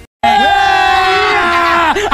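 A sudden, loud, drawn-out yell held at one pitch for about a second and a half after a brief silence, dropping in pitch at the end.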